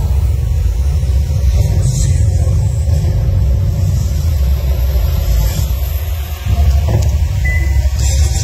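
Loud, deep rumble over a venue sound system, with music under it. It dips briefly about six seconds in, then swells again.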